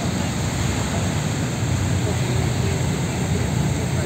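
Steady low drone of river tour-boat engines, with wind and water noise over it.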